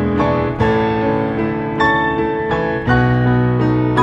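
Improvised piano playing, both hands sounding full, sustained chords over low bass notes. A new chord is struck roughly every second.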